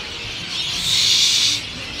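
Loud birds calling, with one harsh, noisy screech lasting about a second in the middle.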